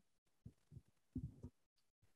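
Near silence: room tone, with a few faint low thumps about half a second and a second and a quarter in.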